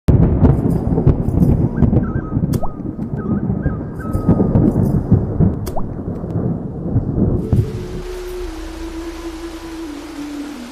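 Rumbling thunder with heavy rain for about the first seven seconds. Then a steady hiss of falling water under a sustained low tone that steps down in pitch.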